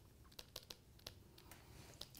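Near silence with a few faint scattered clicks: a stylus tapping on a pen tablet as words are handwritten.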